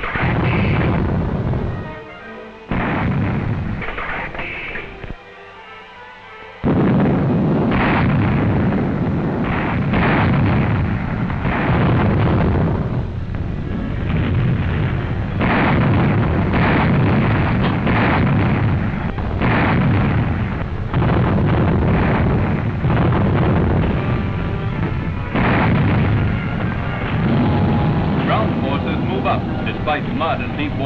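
Artillery barrage of 25-pounder field guns and 3.7-inch anti-aircraft guns firing: heavy gun reports follow one another every second or so, with a short lull about five seconds in. Music plays underneath.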